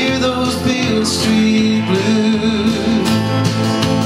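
Live country music: electric guitar over a steady bass line and drums, in an instrumental passage without singing.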